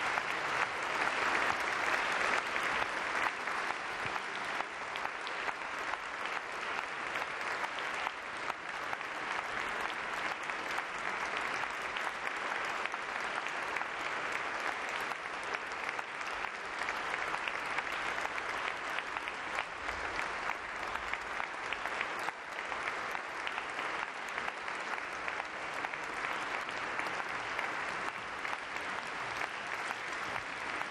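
A large audience applauding: dense, continuous clapping that never breaks off.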